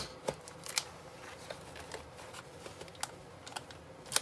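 Scattered light clicks and taps as a model car's interior panel is handled and worked into place against the chassis plates and wiring. A sharper click comes at the start, then a few smaller ones spread through the rest.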